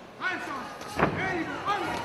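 Voices shouting from around the cage, with one sharp impact about a second in, the loudest sound, as the fighters exchange blows.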